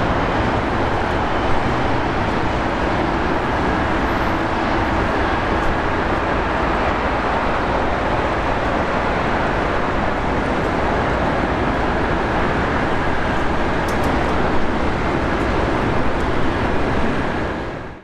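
Steady jet-engine noise of aircraft at an airport, fading out at the very end.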